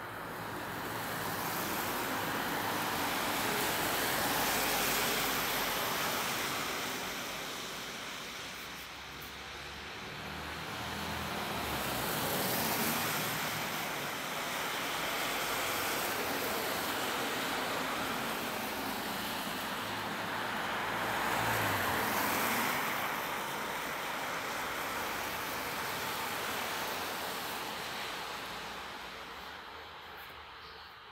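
Several cars passing on a wet road, one after another, their tyres hissing on the water; each pass swells up and fades away.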